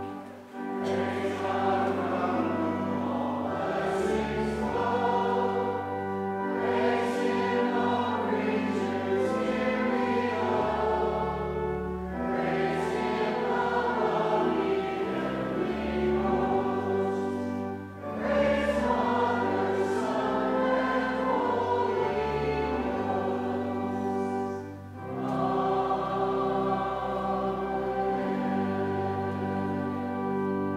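Congregation singing a hymn with organ accompaniment, in long held phrases with brief pauses between them.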